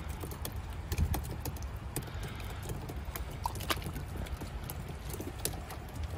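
Irregular light taps and slaps, small fish flapping against the boat's hull, over a steady low rumble.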